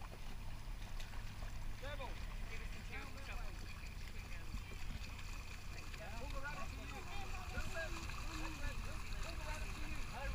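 Faint, distant voices calling out over a steady low rumble of wind and water, with a thin, steady high whine that grows a little stronger in the second half.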